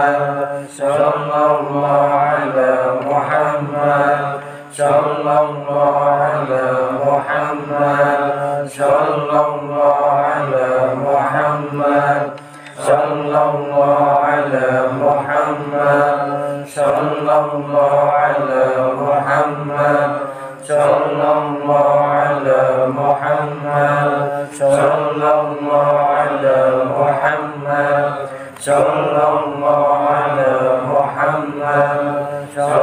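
A group of men chanting dzikir, Islamic devotional remembrance, together. A short chanted phrase repeats about every four seconds, with a brief drop between repeats.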